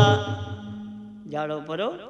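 Harmonium note held and fading while the low head of a dholak rings out from a stroke on the end of a chanted verse; about a second and a half in, a man's voice starts again in a chanting, sing-song delivery.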